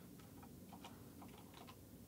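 Faint computer keyboard keystrokes: a short run of quick, light key clicks as a short search word is typed.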